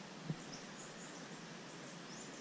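Faint steady outdoor hiss with small birds chirping in short, high calls, and one soft low thump about a quarter of a second in.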